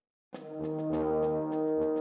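A moment of silence, then music on brass instruments begins about a third of a second in, holding sustained chords.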